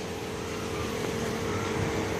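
Small 12-volt, 18-watt electric air pump running with a steady, even hum and a faint constant tone.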